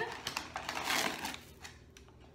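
Measuring spoon scooping granulated sugar out of a paper sugar bag: a crackly rustle of paper and crunching sugar that swells and fades over about a second and a half.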